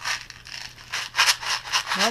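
Plastic packaging and bubble wrap crinkling and rustling as they are handled, a run of crackles that is loudest a little past the middle.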